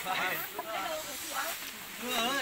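Voices of several people talking close by, with a steady hiss in the background.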